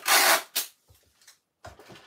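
A strip of adhesive tape pulled off the roll and torn, a loud rip of about half a second at the start with a short second tear just after. A few faint clicks follow.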